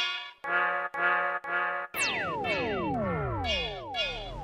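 Radio station jingle music: a few short, punchy brass-like chord stabs, then from halfway through several pitches sweeping down together over about two seconds.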